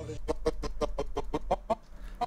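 Film soundtrack being scrubbed or stepped frame by frame in an editing timeline: a rapid stutter of short chopped audio blips, about ten a second.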